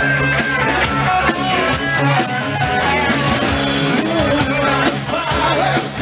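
Live rock band playing loud, with electric guitars and a singer.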